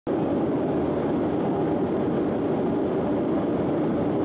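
Steady rush of a jet airliner in flight, engine and airflow noise heard from inside the cabin.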